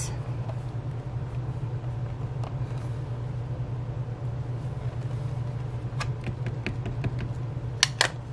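A steady low hum, with a few light taps about six seconds in and one sharp click just before the end, from the hinged clear lid of a stamp-positioning platform being lifted open.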